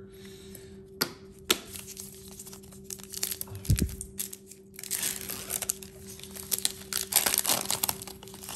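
A foil trading-card pack wrapper being crinkled and torn open, the crackling densest over the second half. Before it there are two sharp taps about a second in and a low thump near the middle.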